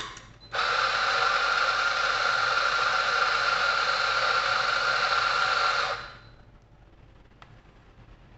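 Espresso machine steam wand blowing steam: a short puff, then a loud steady hiss with a high whistling tone that cuts off about six seconds in.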